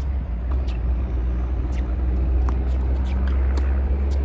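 A steady, loud low rumble with faint scattered sharp ticks over it.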